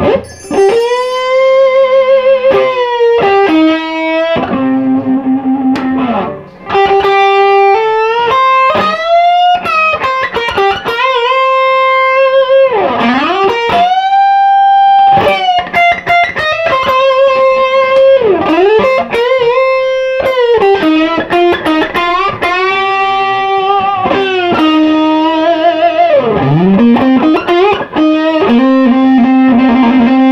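Epiphone Casino Coupe electric guitar with P-90 single-coil pickups, played through a Fender Hot Rod Deluxe amp on its overdriven gain tone. It plays a sustained lead line of held notes, with vibrato and wide bends sliding up and down in pitch.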